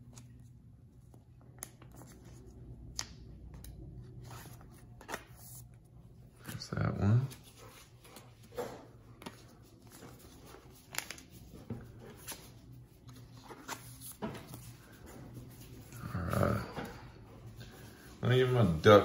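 Faint rustle and soft clicks of a trading card being slid into a thin plastic card sleeve and handled on a wooden table. A brief voice-like sound comes about seven seconds in and another shortly before the end.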